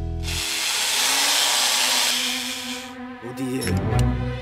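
Cordless power drill whirring for about two and a half seconds, then dying away. It is running the wrong way, backing the bolt out instead of tightening it.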